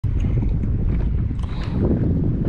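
Wind buffeting the microphone on an open lake: a loud, fluttering low rumble with no engine tone in it.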